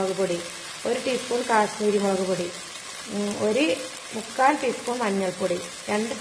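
Onion and tomato masala sizzling as it fries in oil in a pot, a steady hiss, with a woman's voice talking over it at intervals.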